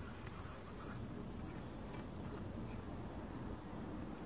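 Faint steady outdoor background noise, an even hiss with no distinct events.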